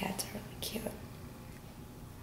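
A person whispering faintly, with two short hissing s-like sounds in the first second.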